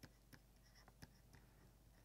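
Near silence, with a few faint ticks of a stylus writing on a tablet screen.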